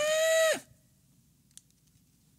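A man's brief high-pitched vocal note, held for about half a second and then dropping off. After it, near silence with a few faint clicks from handling a small object.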